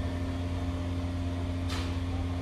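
Steady low machine hum at an even level, with a brief swish near the end.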